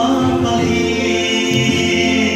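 A man singing a song through an amplified microphone in a reverberant hall, holding long notes over steady backing music.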